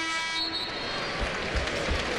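Basketball arena horn sounding for a substitution during a dead ball: a held, steady tone that cuts off about half a second in. Then arena crowd noise, with a few low thumps.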